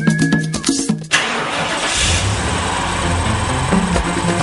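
Theme music, cut about a second in by a car engine starting and running with a steady low rumble, a sound effect laid over the music; the beat comes back near the end.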